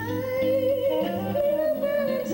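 Live jazz ballad: a woman's voice holds a long sung note with slight vibrato over strummed acoustic guitar chords.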